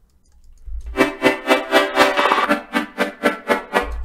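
Software synthesizer chords with vibrato and small-room reverb playing back from the DAW, starting about a second in and pulsing about four times a second. The sound is heard in mono because it is routed back through the mic input.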